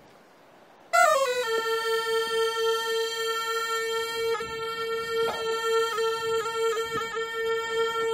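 A small traditional Qiang wind instrument played by mouth. About a second in it slides down into one long, steady note, held unbroken with a few quick grace notes flicked in. The player keeps it going by breathing through the nose while blowing.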